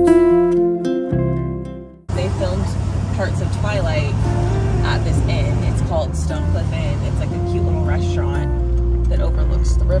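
Acoustic guitar music fading out over the first two seconds, then the steady low running of a classic Ford Mustang convertible's engine with wind and road noise through the open top, the low rumble growing heavier about eight and a half seconds in. A woman talks over it.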